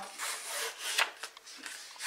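A strip of patterned paper pulled firmly over a bone folder: a dry rubbing scrape with a sharper stroke about a second in. The rubbing breaks the paper's fibres so the strip curls.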